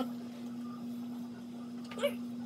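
Quiet room with a steady low hum held at one pitch, and a short click near the end.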